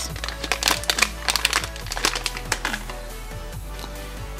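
A shiny plastic packet crinkling as a door projector light is unwrapped from it, a run of crackles over the first two and a half seconds. Background music plays under it.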